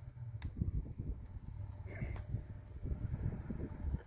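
Wind buffeting the microphone: a gusty, uneven low rumble, with a brief faint high note about halfway through.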